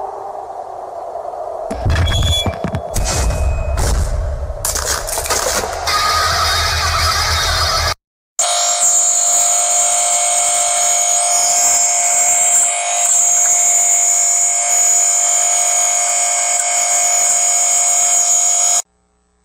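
Loud, harshly distorted electronic music and effects with a buzzing quality. A swelling tone turns into rough noise and crackles, cuts out briefly about eight seconds in, then comes back as a steady, harsh buzzing drone that holds one pitch.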